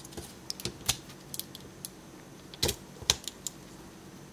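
Small plastic Transformers Siege figure clicking as its joints and parts are moved and snapped into place by hand during transformation: scattered light clicks, with the two loudest close together a little past halfway.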